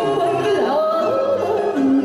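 A woman singing into a microphone in Vietnamese cải lương style, her voice sliding up and down in ornamented turns over instrumental accompaniment that holds steady notes. Near the end a low note is held steadily.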